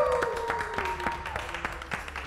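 A small group of people clapping by hand, with drawn-out "woo" cheers that fade out after about a second.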